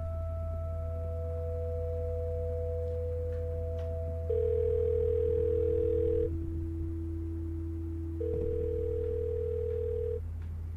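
A telephone ringing: two steady tones about two seconds long each, one about four seconds in and one near the end. Under them runs a low steady drone with long held notes.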